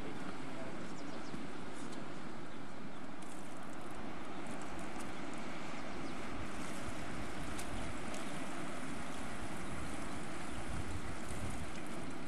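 Steady wind rushing over the microphone, gusting in the low end, with a few faint clicks in the second half.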